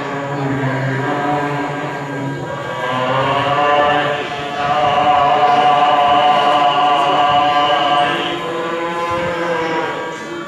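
Devotional chanting sung in slow, long held notes, the longest held for about three seconds around the middle.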